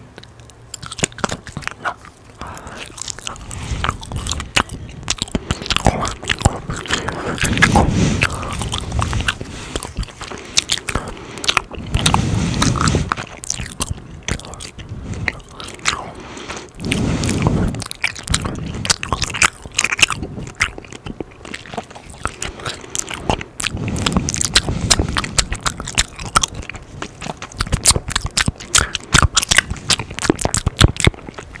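Close-miked gum chewing: rapid wet clicks and smacks of the mouth, with a few longer, deeper swells about every five seconds.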